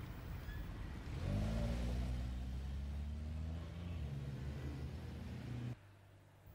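A car engine pulling away from a standstill, starting about a second in with a short rise in its note and then running steadily at low revs; the sound cuts off suddenly near the end.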